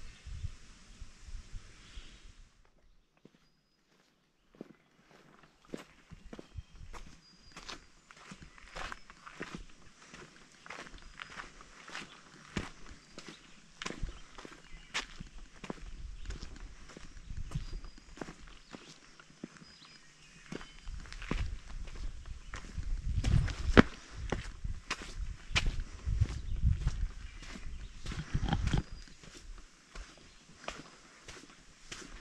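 Footsteps of a hiker walking on a sandy rock and dirt trail, a steady run of short crunching steps that begins a few seconds in. A louder low rumble comes and goes under the steps in the second half.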